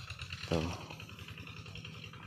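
Quiet outdoor ambience: a faint steady low hum with a faint rapid high-pitched pulsing over it, and one short spoken word about half a second in.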